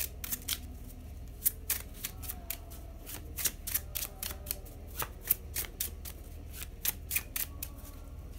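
A deck of tarot cards being shuffled by hand: a quick, irregular run of card-on-card snaps and flicks.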